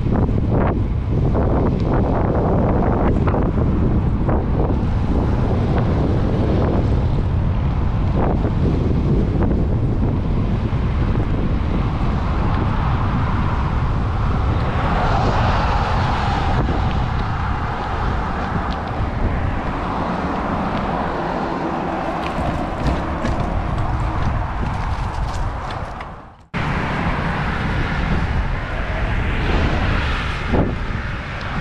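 Wind buffeting the microphone of a bike-mounted action camera while riding along a road, mixed with road and traffic noise; a vehicle passes in the middle. About 26 seconds in the sound cuts out abruptly for a moment, then the noise comes back.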